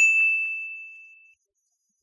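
A single ding sound effect: one clear, high bell-like tone struck once that fades away within about a second and a half.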